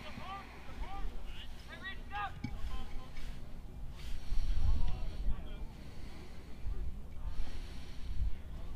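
Distant voices of players shouting and calling across an open field in short bursts, over a low wind rumble on the microphone.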